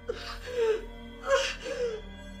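A woman crying in short sobbing cries, in two bouts, over soft background music.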